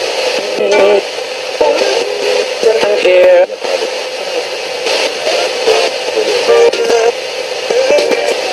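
A spirit box: a RadioShack portable radio sweeping up the FM band, played through a small capsule speaker. It gives a steady hiss, chopped every fraction of a second by short snatches of broadcast voices and music as it jumps from station to station.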